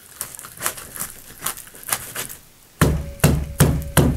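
Kitchen knife cutting off a zander's head on a wooden cutting board: a run of small crunching clicks as the blade works through scales and bone, then, in the last second, several heavy thumps as the blade is driven through the backbone into the board.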